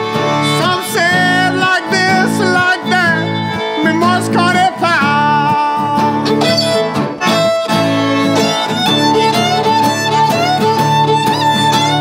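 Cajun band playing an instrumental break: fiddle carrying the melody with sliding notes over Cajun accordion and acoustic guitar chords in a steady rhythm.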